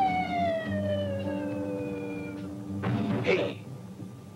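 Cartoon falling sound effect: a long whistle sliding steadily down in pitch, over a held low music chord. A short noisy burst follows about three seconds in.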